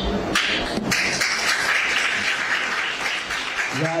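Audience applause in a hall, opening with a few sharp claps and lasting about three and a half seconds.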